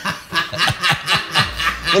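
A man laughing hard with his head thrown back: a quick string of short laughs, about four to five a second.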